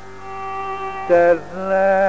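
Carnatic raga improvisation in Kharaharapriya over a steady drone, without percussion: soft held notes, then a brief louder note about a second in that slides down and settles into a long held note.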